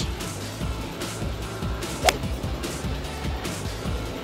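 Background music with a steady beat, and about two seconds in a single sharp crack of a golf club striking the ball on a tee shot.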